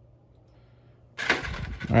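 Near silence with a faint low hum for about a second, then a loud breathy exhale from a person that runs straight into speech near the end.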